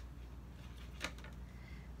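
Quiet workshop pause with a steady low hum, broken once about a second in by a single light click, a small tap of something handled on the workbench.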